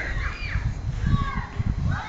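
Wind buffeting the microphone in uneven gusts, with faint high gliding calls in the background near the start, about a second in, and near the end.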